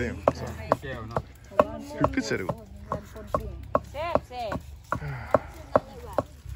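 A knife chopping food on a board, in steady, regular strokes about two to three a second.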